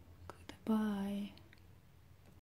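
A person's short voiced sound, a held 'mm'-like syllable about half a second long with a slightly falling pitch. It comes just after two soft clicks.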